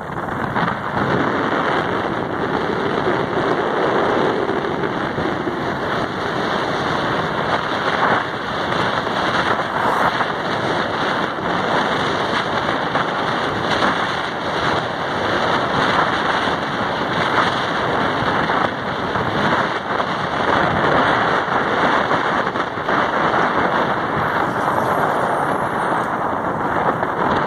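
Wind buffeting a camera microphone on a moving vehicle: a loud, steady, ragged rushing noise with no distinct engine note.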